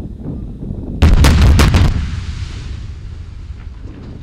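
Special-effects napalm fireball going off: a sudden blast about a second in, with a quick cluster of sharp cracks over the next second, then a low rumble that fades away.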